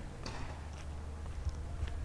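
Footsteps walking, heard as a few faint irregular scuffs and clicks over a steady low rumble on the microphone.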